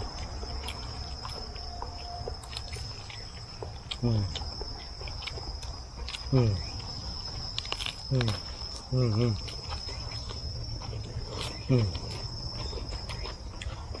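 A steady, high-pitched drone of insects. Over it, men give several short "mm" hums of approval, each falling in pitch, while they chew, with faint crisp chewing clicks between them.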